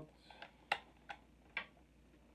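Four sharp, separate clicks as the hardware of a Hohner Erika button accordion is handled, with the loudest a little under a second in. No reed notes sound.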